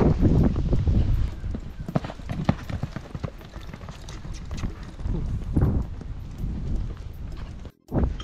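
Horses cantering on loose sand: irregular hoofbeats, with a loud low rumble in the first second, then lighter hoof thuds. The sound cuts out briefly near the end.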